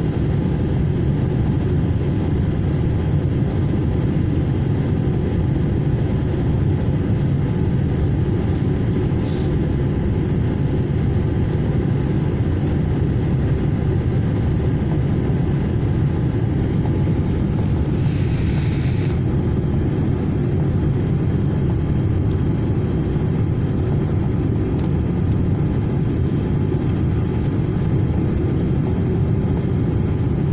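Steady low rumble inside the cabin of a Boeing 787-8 Dreamliner on final approach, the engine and airflow noise heard from a window seat over the wing. Two short, higher hissy sounds stand out, one about nine seconds in and another around eighteen seconds.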